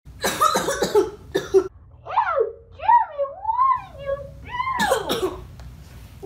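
A boy coughing in harsh fits, once near the start, again a second and a half in, and again near the end, with a long wavering moan between the fits. It is an acted sick cough.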